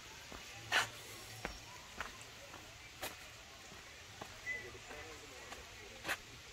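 Footsteps scuffing on a dry dirt path, a few irregular steps and scrapes, the loudest about a second in, over faint background voices of people.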